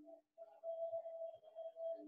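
A faint, steady, held musical tone that breaks off briefly just after the start and then carries on.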